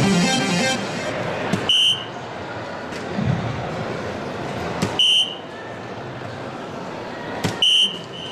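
Three soft-tip darts hitting a DARTSLIVE electronic dartboard, about three seconds apart. Each is a sharp click as the dart lands, followed at once by the board's short high beep confirming the hit, here a single 19 each time.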